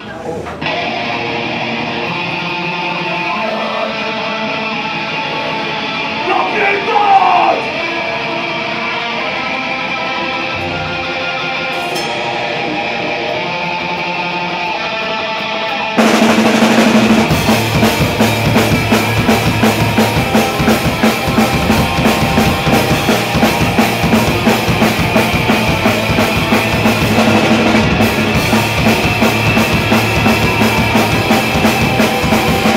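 Black metal band playing live: held, ringing electric guitar chords for the first half, then about halfway through the drums and full band come in hard with a fast, dense beat.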